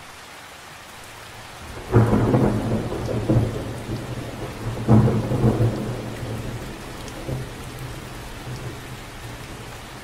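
Steady rain falling on water, with a loud clap of thunder about two seconds in and a second one about three seconds later, the rumble dying away over the next few seconds.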